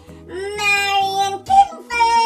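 Music: a high child's voice singing one long held note and then a short one, over a light instrumental backing.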